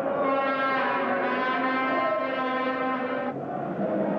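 A horn sounding one long steady note for about three seconds, then cutting off, over steady background noise.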